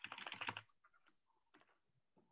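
Typing on a computer keyboard: a quick run of keystrokes in the first half second or so, then a few scattered, fainter key taps.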